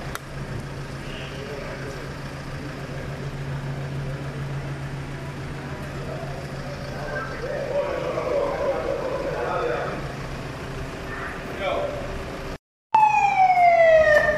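A steady low hum with indistinct voices. Then, after a brief drop-out near the end, a loud police siren wail sweeps downward in pitch.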